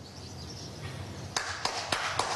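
An audience starts applauding about two-thirds of the way in, the claps thickening quickly after a brief stretch of quiet room noise.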